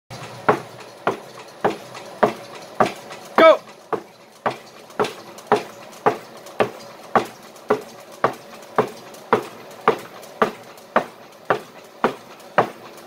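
Racing wheelchair on a roller trainer in a sprint: gloved hands strike the push rims in a sharp, steady rhythm of about two strokes a second, over the steady running noise of the rollers. A short shouted call breaks in a few seconds in.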